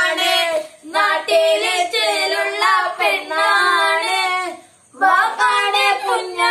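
Children singing a song in high voices, with sustained wavering notes and two short breaks, one about a second in and one near five seconds in.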